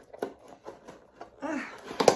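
Small cardboard box being opened by hand: irregular clicks, scrapes and rustles of the flaps and lid.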